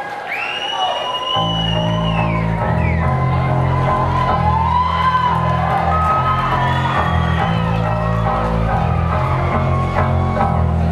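Audience cheering and whistling, then about a second and a half in a live rock band starts a song with a low, sustained riff on guitar and bass under the continuing cheers.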